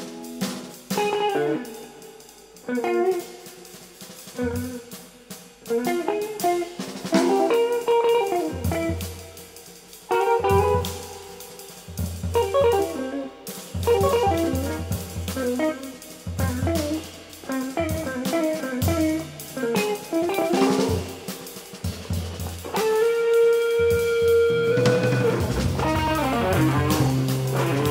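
Jazz ensemble recording: plucked guitar lines over drum kit and bass notes, with a long held note a few seconds before the end.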